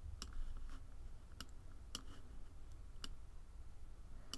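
Computer mouse clicking, a handful of sharp single clicks a second or so apart, over a faint steady low hum.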